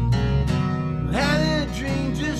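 Acoustic band music: strummed acoustic guitars with a steady low bass, and a male lead voice starting to sing about a second in.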